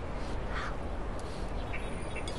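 Steady low background noise of an outdoor street scene, with one faint, short sound about half a second in.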